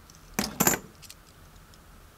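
Kennedy half-dollar coins clinking against each other in the hand: two sharp metallic clinks with a brief ring, a quarter second apart, about half a second in.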